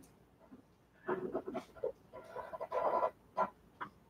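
A man's voice, quiet and halting: a drawn-out "So" about a second in, followed by a few soft murmured sounds.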